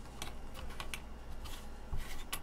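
Light, irregular clicks and taps of wooden layout letters being set down and shifted on a round wooden sign board, about half a dozen in two seconds.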